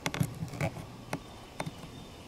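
A pointed tool clicking and scraping against the thin metal lid of a flat anchovy tin as a hole in it is widened: about half a dozen light, irregularly spaced clicks and scrapes.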